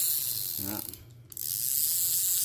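Ryobi spinning reel cranked fast by hand, its rotor and gears giving a steady mechanical whir. The cranking stops briefly about a second in, then starts again.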